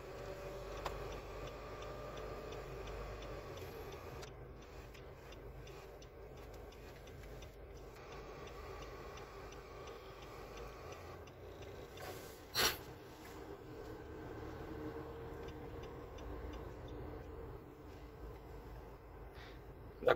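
Quiet cabin of a Nissan Navara pickup with the low steady hum of its diesel engine, and faint sound from the car radio as it is tuned between stations. One sharp click about twelve and a half seconds in.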